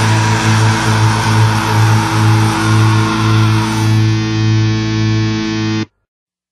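End of a black metal song: one distorted electric guitar chord held and left ringing, its bright upper edge slowly dying away. It cuts off suddenly just before the end.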